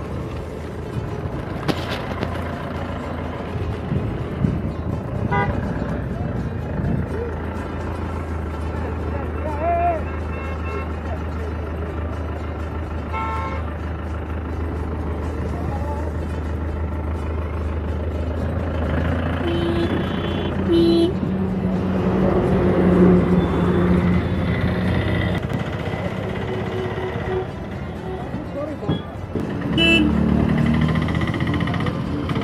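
Highway traffic passing with a steady engine hum, vehicle horns honking, and voices.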